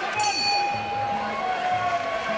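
Ring bell struck once, signalling the end of the round; its metallic ring holds and slowly fades. Muay Thai fight music with a steady drum beat, about two beats a second, runs under it.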